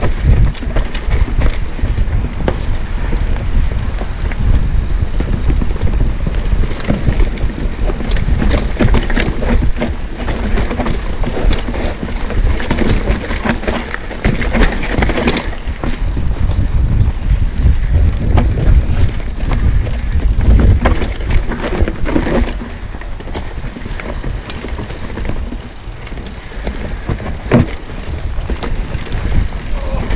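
Orange P7 steel hardtail mountain bike riding down a dirt forest trail: a constant low rumble of tyres on dirt, with frequent knocks and rattles from the bike over bumps. It eases off for a few seconds after about twenty-two seconds in.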